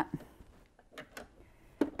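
A few faint, short clicks and taps from fabric and hands being positioned at a sewing machine; the machine's motor is not running.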